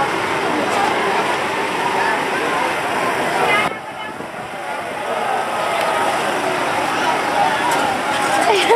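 Crowd of many people talking at once, overlapping voices with no single speaker standing out. The sound drops suddenly about halfway through and builds back up.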